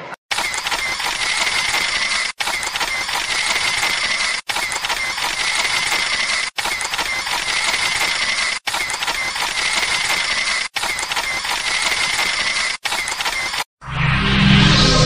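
A looped sound effect: the same dense noisy clip with a steady high tone, repeated about every two seconds with a brief break between repeats.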